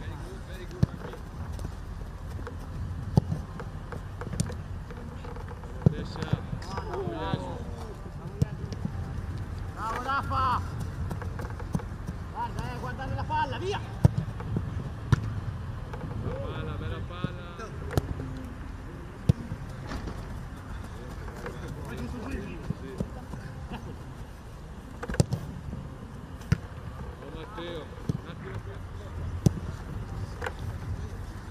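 Footballs being kicked on a grass pitch: sharp single thuds every second or two. Distant shouting voices and a steady low background rumble run underneath.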